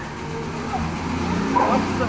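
A motor vehicle's engine running nearby as a steady low hum.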